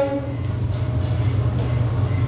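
A steady low hum continues without break; the last syllable of a called-out word ends just as it begins.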